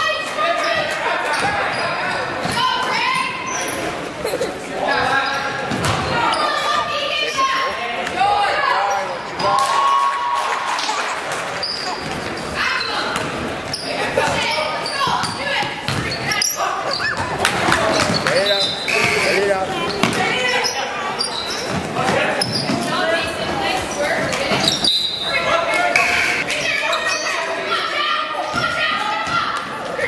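Basketball dribbled and bouncing on a hardwood gym floor during a game, with voices calling out throughout, all echoing in a large gymnasium.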